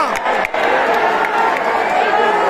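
Large football stadium crowd roaring and cheering, a dense wall of many voices.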